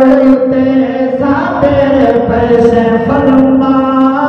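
Men chanting a Saraiki naat, a devotional poem in praise of the Prophet, into microphones, with long held notes that shift in pitch.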